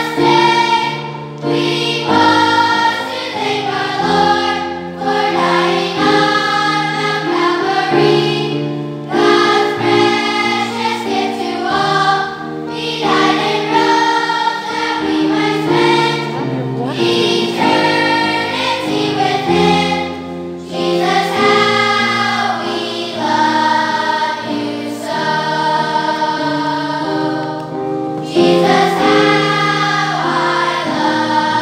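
A large children's choir singing, the phrases separated by short breaks.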